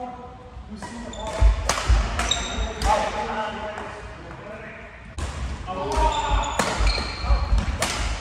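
Badminton play on a wooden sports-hall floor: sharp racket strikes on the shuttlecock, squeaking shoes and heavy footfalls, in two busy spells about a second and five seconds in. Voices carry in the hall.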